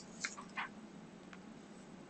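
Quiet lecture-room tone with a steady low hum, broken by a few faint, short high-pitched sounds: three within the first second and one more shortly after.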